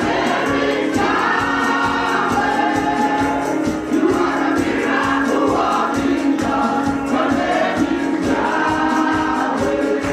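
Women's gospel choir singing into microphones over a steady beat.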